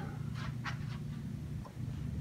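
Steady low room hum with a few faint ticks about half a second in.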